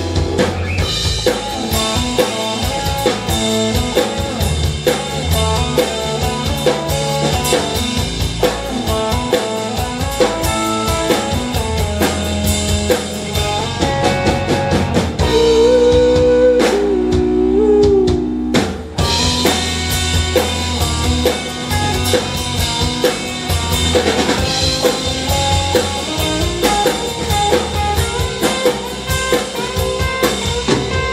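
Live rock band playing an instrumental passage: drum kit, electric guitar and keyboards. About halfway through, the drums drop out for a couple of seconds under a single held, wavering note before the full band comes back in.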